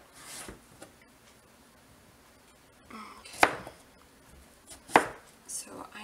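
Chef's knife cutting raw peeled pumpkin into cubes on a plastic cutting board: after a quiet stretch, a few sharp knocks of the blade striking the board, the loudest two about a second and a half apart in the second half.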